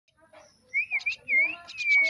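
Young mynas begging to be fed, giving short harsh calls in quick succession, mixed with a few clear whistled notes that bend up and down in pitch, the last a long falling whistle near the end.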